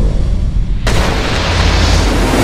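Deep boom and low rumble from a movie-theatre pre-show countdown soundtrack. For the first second or so only the deep rumble is heard, then the full-range theme music comes back in.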